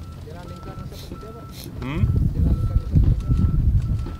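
Repeated electronic beeping, a short high tone a little under once a second, from a construction machine's warning beeper. Low wind rumble on the microphone grows louder in the second half.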